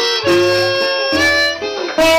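Blues harmonica playing a fill of held notes between sung lines, with a falling bend near the end, over a resonator guitar and an upright bass plucking low notes.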